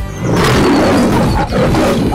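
A lion's roar sound effect: one long, loud roar starting a moment in, with a brief break shortly before it ends.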